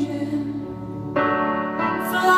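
Grand piano chords ringing: a held chord fades away, then a new chord is struck just over a second in and sustains.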